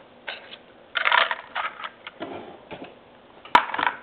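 A styrene 1/25-scale model tow truck being handled and turned back onto its wheels on a wooden table: scattered light plastic clicks and rattles, with a sharper tap about three and a half seconds in.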